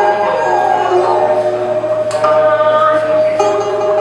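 Traditional Nanyin chamber music: plucked pipa and sanxian, an end-blown dongxiao flute and a bowed erxian accompany a long, steadily held sung or flute note, with the singer's wooden paiban clappers marking the beat.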